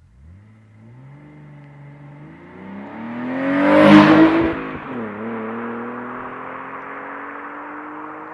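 BMW E46 320ci's 2.2-litre straight-six with a Scorpion aftermarket exhaust, accelerating past in a fly-by. The engine note climbs as the car approaches and is loudest about four seconds in as it passes. The pitch then drops and climbs again as the car pulls away.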